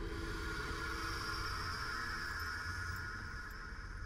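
Suspense film-score drone: held steady high tones over a low rumble, with a lower tone dropping out partway through and the whole easing off slightly near the end.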